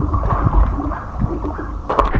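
Hot tub water sloshing close to the camera, then one sharp splash near the end as a child drops back into the water.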